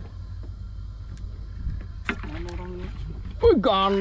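A steady low rumble throughout, with a man's voice coming in about halfway: a hummed, held tone first, then a loud drawn-out exclamation that slides down in pitch near the end.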